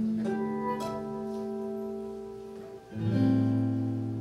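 Acoustic guitar played live: notes picked one after another into a chord that rings out, then a new chord strummed about three seconds in.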